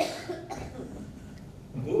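A man coughing close to a microphone: one sharp cough at the start and a smaller one about half a second later.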